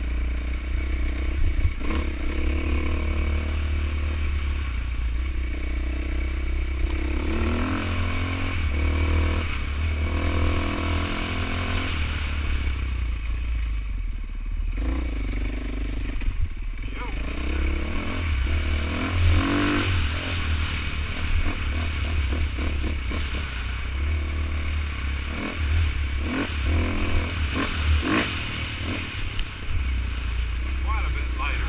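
Husqvarna enduro dirt bike engine running under way, its pitch rising and falling again and again as the throttle is worked, over a constant low rumble. Short clattering knocks come through as the bike rides over rocks.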